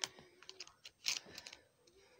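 Scissors snipping through a plastic WIC card: a handful of short, sharp clicks at irregular intervals.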